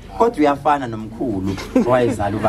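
A man's voice speaking in short phrases, with no other clear sound.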